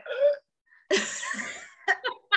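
A woman's voice: a short vocal sound, a brief pause, then a long breathy gasp acting out the feel of humid air, and a short laugh near the end.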